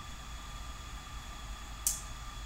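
Steady room tone in a small office: a low hum and even hiss, with a short hiss near the end.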